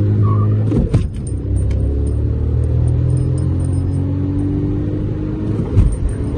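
Stage 1-tuned Volkswagen Vento TSI accelerating hard, heard from inside the cabin, its engine note climbing steadily. There is a brief break with a click about a second in and another near the end, like gear changes.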